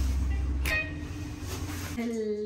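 Steady low rumble with a hum, as of a lift cabin running. About two thirds of a second in there is a click, and the deepest part of the rumble drops away.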